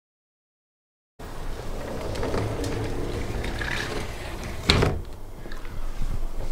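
About a second of dead silence, then steady background noise with one sharp clack near the end, like a latch or door shutting.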